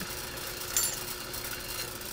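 Drill press motor running with a steady hum while a small starting bit cuts a pilot hole into a metal enclosure at a center-punch mark. A brief higher scrape comes just under a second in.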